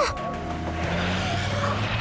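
Cartoon sound effect of a truck's engine running as it drives in, over background music.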